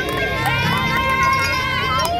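A group of women cheering and squealing excitedly, with long high-pitched held cries.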